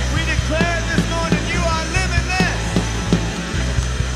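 Live church worship band music playing on, with steady low bass notes, a regular beat and a voice over it.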